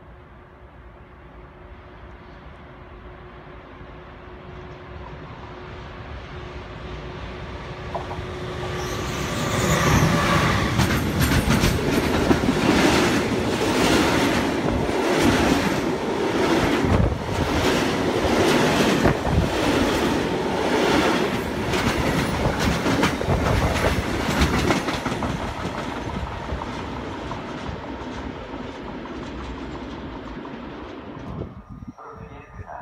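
Freight train approaching and passing close by: a steady hum that grows louder for about ten seconds, then a long run of wagon wheels clacking over the rail joints in a steady rhythm, which fades near the end as the last wagons go by.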